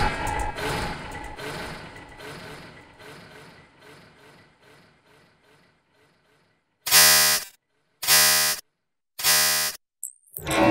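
Experimental noise/electroacoustic recording: a dense echoing sound whose repeats thin out and fade away over about six seconds. Then come three short, loud, pitched blasts about a second apart, like a horn or buzzer.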